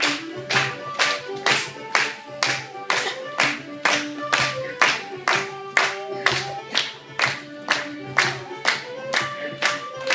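An accordion playing a traditional dance tune, with steady clapping in time at about two claps a second.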